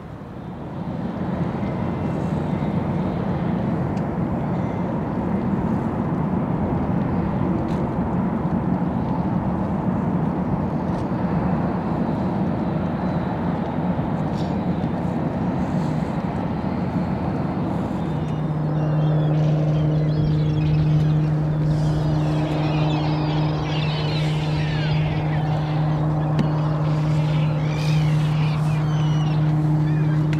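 Ship engines droning on the water: a broad low rumble at first, then from about 18 seconds a steady engine hum with a clear low pitch. Birds are calling over it through the second half.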